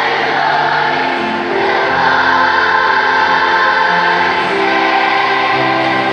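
A massed children's choir of thousands singing together in a large arena, holding long notes that move from pitch to pitch, with the echo of the hall.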